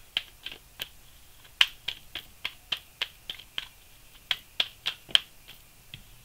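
A deck of tarot cards being shuffled by hand, the cards slapping together in sharp separate clicks about three a second, with a brief pause about a second in.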